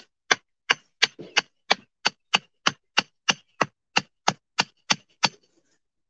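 A hammer driving a stake into garden soil: about eighteen sharp, evenly paced blows, roughly three a second, stopping a little over five seconds in.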